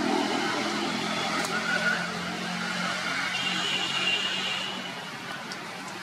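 A motor vehicle's engine running steadily, with a thin high tone for about a second past the middle; the sound eases off near the end.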